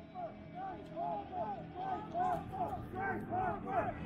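Voices talking in the background, muffled, with no word clear.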